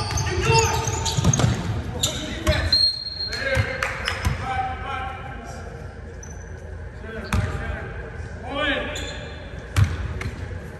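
A basketball bouncing on a hardwood gym floor in a series of dribbles and knocks, with players' voices echoing in the large hall.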